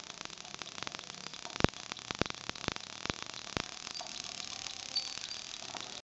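An 1890 Wimshurst electrostatic machine throwing sparks across its gap. Irregular sharp snaps come every half second or so, the loudest about a second and a half in, over a faint crackle.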